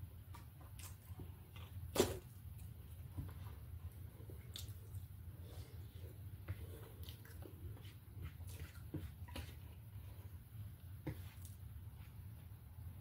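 Quiet eating sounds: faint chewing and small scattered clicks of food being handled, over a steady low hum, with one sharper click about two seconds in.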